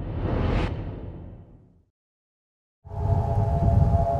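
A whoosh transition sound effect that fades away over about two seconds, followed by a second of silence. About three seconds in, a steady chord of held tones starts over a low rumble of wind: a metal wind harp's strings sounding in the wind.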